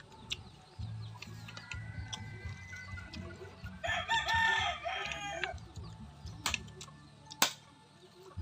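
A rooster crows once, about four seconds in, for under two seconds. A few sharp clicks follow near the end.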